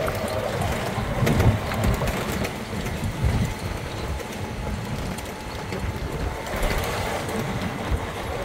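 Open golf buggy driving along a paved path: steady low rolling noise of the cart with faint rattling, and wind buffeting the microphone.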